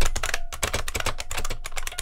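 IBM Model M 1390131 keyboard (1986) being typed on fast: a rapid, dense clatter of buckling-spring key clicks.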